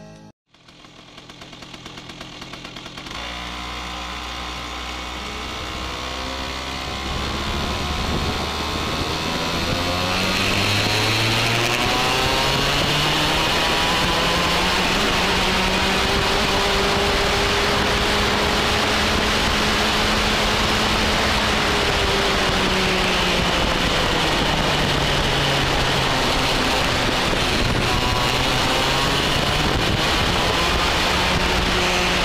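Racing kart engine heard from on board, its pitch rising and falling as it accelerates and eases through bends. It comes in a few seconds in and grows louder over the first ten seconds.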